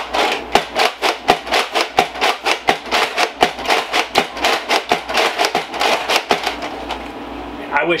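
A large toy foam-dart blaster cycling and firing in a fast, even run of sharp clicks, about five a second, stopping shortly before the end.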